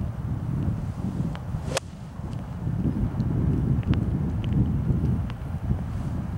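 A single sharp crack of a golf club striking the ball off the fairway about two seconds in, over steady wind rumble on the microphone.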